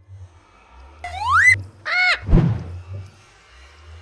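Cartoon sound effects over a low hum: a pitched whistle sweeps upward about a second in and cuts off abruptly, a short tone rises and falls just before two seconds, then a heavy low thud lands about two and a half seconds in.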